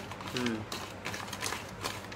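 A hand mixing chopped vegetables in a stainless-steel bowl: a run of small, irregular clicks and rustles as the pieces and fingers move against the steel. A brief voice is heard about half a second in.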